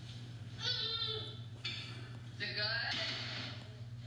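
A high-pitched voice sounds in two short stretches, one about half a second in and a shorter one past the two-second mark, over a steady low hum.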